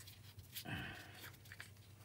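Faint scuffing and rubbing of hands pulling the plastic cap off a glue stick.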